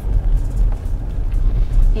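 Low, steady rumble of a car on the move, heard from inside the cabin.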